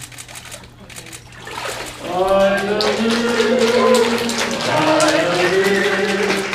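Soft water splashing in a baptismal tank as a person is dipped under and lifted out by immersion. From about two seconds in, a group of voices comes in loudly, holding long notes as in singing.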